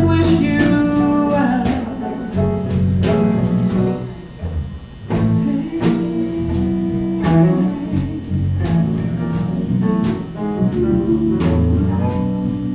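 Live blues band playing, led by electric bass and guitar, with singing at times; the music drops back briefly about a third of the way through.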